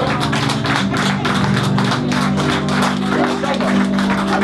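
Live band music: an acoustic guitar strummed in fast, even strokes over sustained keyboard chords.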